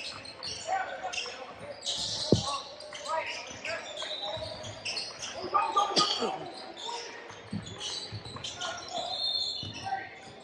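A basketball dribbled and bouncing on a hardwood gym floor during play, in an echoing hall, with a sharp thud about two seconds in. Voices from players and spectators run underneath.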